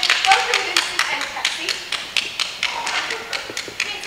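A small group clapping, the claps irregular and several a second, thinning out and growing quieter over the few seconds, with faint voices under them.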